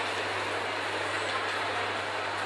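Steady background noise of a busy indoor shopping mall, with a low steady hum underneath and no distinct events.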